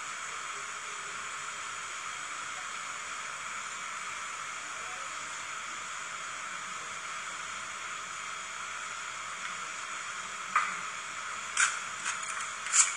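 Liquid ice-cream base poured from a jug onto a cold steel pan over a slice of cake, heard as a steady even hiss. A metal spatula clicks on the pan twice near the end.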